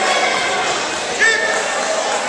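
Indistinct voices and calls from people around a wrestling mat in a gymnasium, with one short shout just over a second in.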